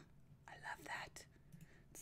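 A woman's faint whispered murmur, under her breath, for about half a second near the middle; otherwise near silence.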